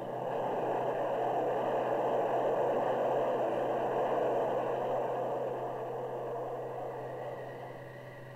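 Grumman F-14A Tomcat jet passing overhead: a steady rushing jet noise that builds in the first couple of seconds and slowly fades away toward the end.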